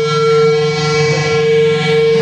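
Live rock band playing loud: electric guitar, bass and drums under one long, steady held note.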